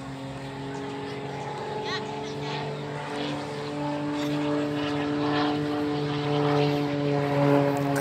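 Propeller-driven aerobatic plane flying overhead, its engine a steady droning tone that grows louder toward the end as the plane comes round.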